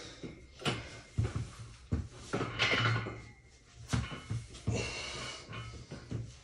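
A weightlifter's sharp, forceful breaths under a loaded barbell during a squat, broken by several short knocks and clinks from the bar and plates in the power rack.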